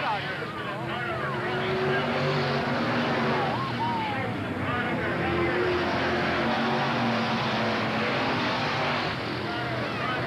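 A pack of dirt-track stock cars running laps on the oval, several engines going at once in a steady, continuous sound whose pitch shifts as the cars pass.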